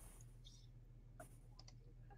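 Near silence: room tone with a few faint, brief clicks about halfway through.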